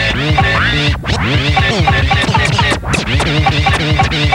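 Turntable scratching: a vinyl record pushed back and forth under the stylus, its sound sweeping up and down in pitch and chopped on and off with the mixer, over a steady beat. It cuts out briefly twice.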